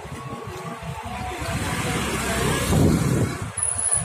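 A motor vehicle passing close by, its sound swelling to a peak about three seconds in and then falling away.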